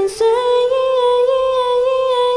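A female voice sung into a handheld microphone, stepping up about a quarter second in to one long held note with a slight waver, over a sparse backing track with the beat dropped out.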